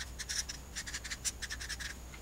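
Marker pen writing on paper: a run of short scratching strokes as a short equation is written out, stopping just before the end.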